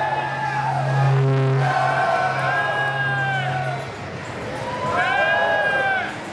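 Music playing over a crowd cheering and whooping, with high whoops about two seconds in and again near the end. A steady low bass note in the music stops about four seconds in.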